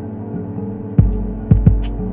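Experimental electronic music: a steady humming drone of several held tones, with sharp low thumps about a second in and twice more about half a second later, and a short high hiss near the end.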